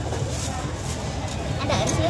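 Market background: a steady low hum with indistinct noise, and a voice starting to speak near the end.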